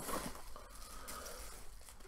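Faint crinkling and tearing of paper wrapping as a small item is unwrapped by hand.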